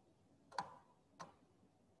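Near silence broken by two short clicks, about half a second and just over a second in, the second fainter.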